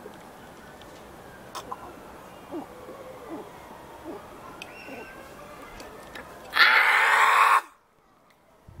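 Quiet background with a few small clicks, then near the end a loud, breathy rush about a second long, like a mouth blowing hard to cool a chilli burn. It cuts off suddenly.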